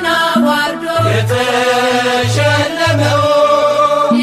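Ethiopian Orthodox mezmur (hymn) sung in Amharic with instrumental accompaniment: long held sung notes over short repeated low bass notes.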